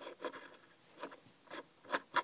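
Faint handling noise of a plastic Littlest Pet Shop figurine being moved on a wooden tabletop: a few short, scattered rubs and scrapes.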